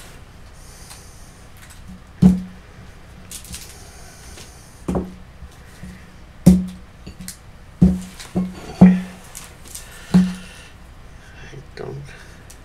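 Boxes of modelling clay being handled and set down on a tabletop: about seven dull knocks, a couple of seconds apart at first and then closer together, with some light rustling of packaging between them.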